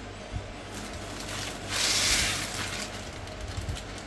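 Plastic bag of frozen peas, corn and red pepper rustling and crinkling as the vegetables are tipped out into a pot of boiling water, with one loud burst of crinkling about two seconds in.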